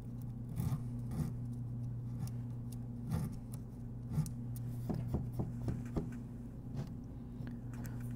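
Sandpaper wrapped over a popsicle stick rubbing against the ends of a guitar's frets, rounding them off: faint, irregular scratching strokes over a steady low hum.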